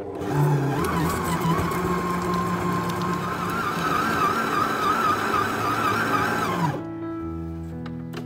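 Electric stand mixer motor running while its dough hook kneads bread dough, starting right away and cutting off suddenly near the end, with background music underneath.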